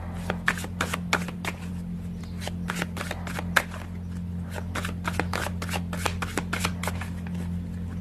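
Tarot cards being shuffled and handled, an irregular run of crisp card clicks and flicks, several a second, over a steady low hum.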